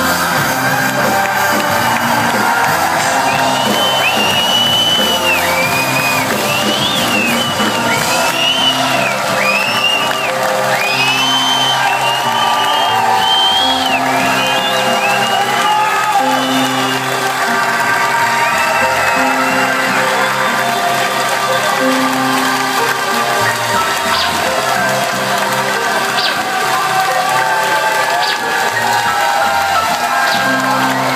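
A live band playing a synth-heavy song loudly, with sustained synthesizer chords that change every second or two. Over it the concert crowd cheers and whistles, with many shrill whistles for the first two-thirds.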